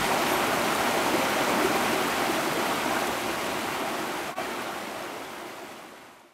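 A steady, even rushing noise like running water, slowly fading out over the last few seconds, with a momentary break about four and a half seconds in.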